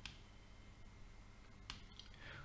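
Near silence: room tone, with a short click at the start and two faint clicks near the end.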